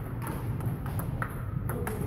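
Table tennis ball clicking off paddles and table during a rally: several sharp clicks at uneven spacing, one followed by a short ring.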